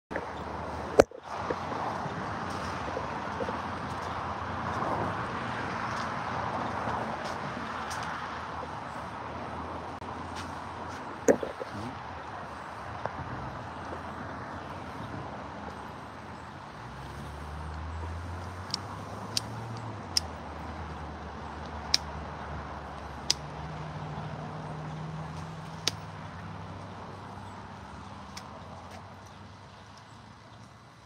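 Car on the road: tyre and engine noise, with a low engine hum from the middle of the stretch as an SUV pulls out of a driveway. A few sharp clicks come through, the loudest about a second in and another at about eleven seconds.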